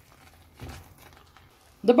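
A spatula stirring thick, cooked-down pepper and eggplant ajvar in a non-stick frying pan: a few faint, soft squelches. A woman starts speaking near the end.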